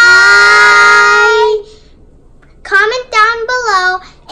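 Children's voices: one long, held high call lasting about a second and a half, then, after a short pause, a brief sing-song phrase near the end.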